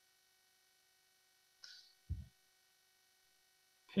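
Faint steady electrical hum made of a few thin steady tones, with a brief faint blip about two seconds in.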